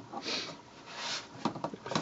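Two soft breaths through the nose, then a few light clicks of Lego plastic parts near the end as hands take hold of the model.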